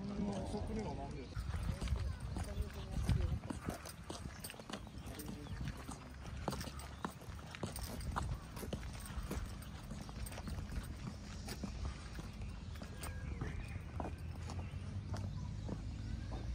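Footsteps and irregular clicks and knocks on a park path, with people talking in the background over a steady low rumble.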